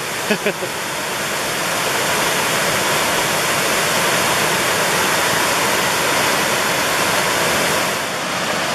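Steady rushing of a waterfall pouring into the pool below it, growing a little louder over the first few seconds.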